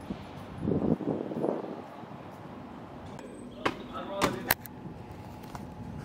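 Outdoor background with a brief spell of indistinct voices about a second in, then three sharp clicks or knocks in quick succession around four seconds in.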